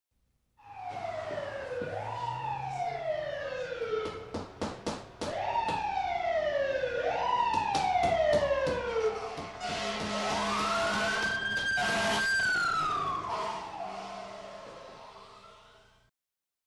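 Emergency vehicle siren wailing in repeated sweeps, each rising quickly and then falling slowly, with a run of sharp clicks about four seconds in. Near the end it makes one long rise, holds a higher note, then winds down and fades.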